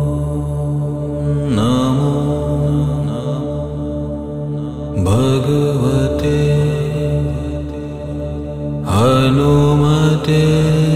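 A chanted Sanskrit mantra: a low voice held over a steady drone, with a new syllable sliding up into pitch three times, about one and a half seconds in, at five seconds, and about a second before the end.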